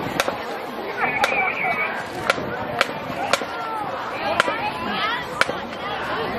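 Sharp drumline clicks keeping a marching beat, about two a second with a few skipped beats, over voices and shouting.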